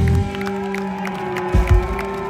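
Live rock band ending a song: the full band with bass cuts off just after the start, leaving ringing guitar notes and two kick-drum thumps in the second half, under a crowd clapping and cheering.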